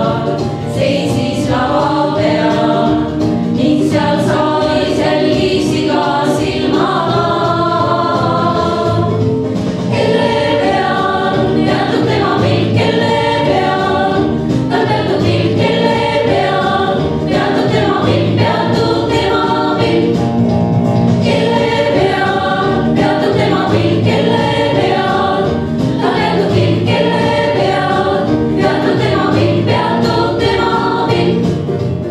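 Women's vocal ensemble of six voices singing a choral piece in harmony, with held chords and moving lines that run without a break.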